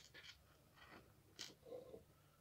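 Faint clicks and light scraping of small plastic building-block pieces being handled and pressed together, with one sharper click about one and a half seconds in.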